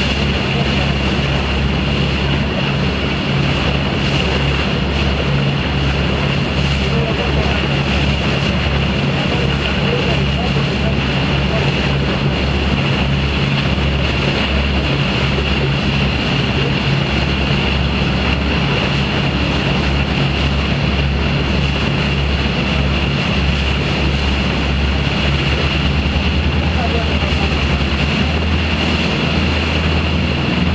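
A party boat's engines running steadily under way, a constant low drone, with water rushing past the hull.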